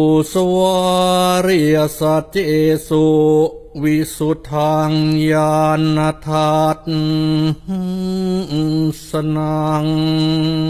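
Buddhist chant in Pali, recited on one steady held pitch, syllable after syllable with short breaks between phrases.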